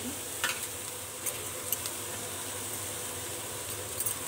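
Grated carrot and beetroot sizzling in oil in a non-stick pan as they are stirred, a steady hiss with a few light clicks.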